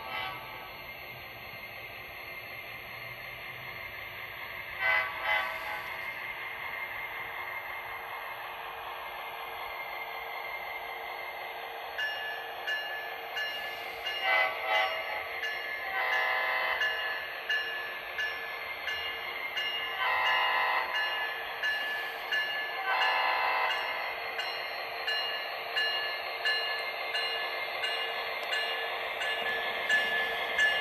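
HO scale model diesel locomotive's sound decoder playing a diesel engine drone with several horn blasts, some short and some long, through the model's small speaker. From about the middle on, a bell rings steadily as the locomotive nears the crossing.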